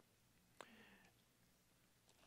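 Near silence: room tone, with one faint, short breath-like sound about half a second in.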